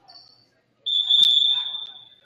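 Referee's whistle: one long, steady, shrill blast starting a little under a second in.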